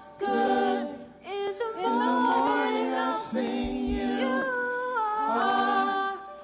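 A woman singing a slow gospel worship song into a microphone, in long held phrases with short pauses for breath between them.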